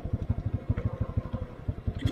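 Motorcycle engine running with a steady, even pulsing beat, heard through a microphone clipped inside the rider's helmet.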